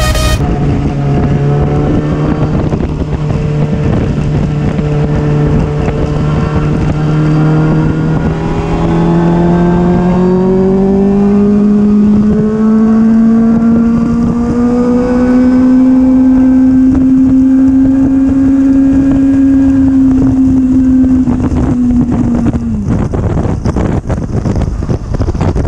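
Yamaha R6 inline-four engine running under way. Its note holds steady, climbs slowly through the middle, holds high, then drops sharply near the end. Wind buffets the microphone in the last second or so.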